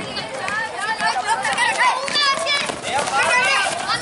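Children shouting and calling out over one another, many high voices overlapping without a break.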